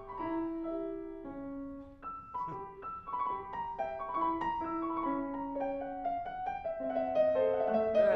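Steinway grand piano being played: a classical passage of sustained melody notes over moving inner and bass notes, growing louder towards the end.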